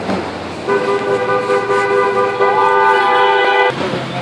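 A car horn sounding one steady two-note blast for about three seconds, starting under a second in and cutting off suddenly near the end.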